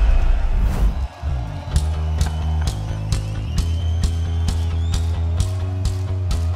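A loud intro jingle cuts off about a second in. Then a live rock band vamps: a held low bass drone under a steady beat of drum and cymbal hits, about two a second.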